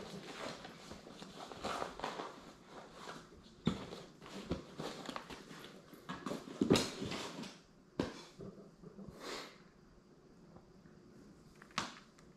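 Handling noises from camera gear being unpacked and fitted together: irregular rustling, light knocks and clicks, with one sharp click near the end.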